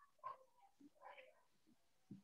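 Near silence, with a few faint short sounds.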